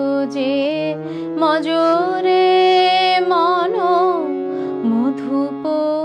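A woman singing a Bengali Ramakrishna devotional song (Ramakrishna geeti), her voice gliding and wavering over steady held accompaniment notes that shift pitch a few times; she holds one high note for about a second midway.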